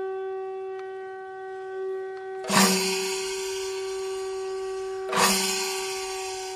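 A conch shell blown in one long, steady note. Two crashing percussion strikes ring over it, about two and a half and five seconds in.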